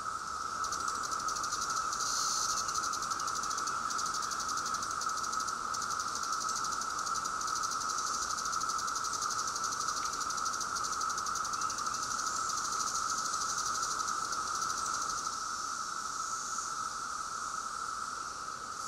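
A chorus of Brood X periodical cicadas: a continuous, even high drone with a fainter, finely pulsed buzzing layered above it.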